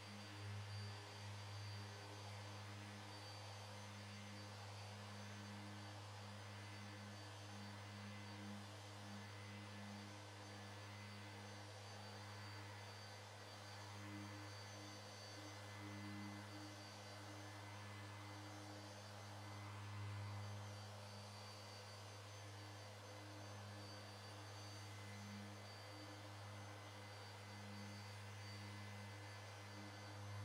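Electric random orbital sander with dust extraction, running steadily while sanding primer on a car roof: a faint, steady low hum with a hiss, swelling and easing slightly as the pad is moved.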